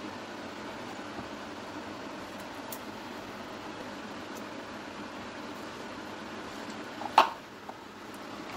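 Steady fan-like hiss of kitchen background noise, with one sharp knock about seven seconds in.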